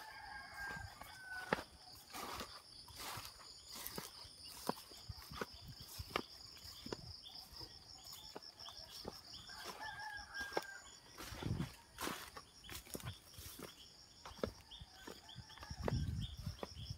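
A rooster crows twice, once near the start and again about ten seconds in, over a steady high-pitched pulsing buzz. Footsteps crunch and rustle through dry leaves and undergrowth throughout.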